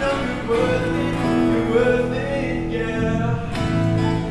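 A young male voice sings a pop song solo over instrumental accompaniment.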